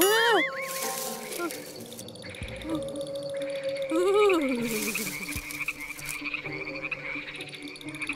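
Cartoon night-forest sound effects: frog-like croaking calls that rise and fall, one at the start and another about four seconds in, then a high steady trill through the second half.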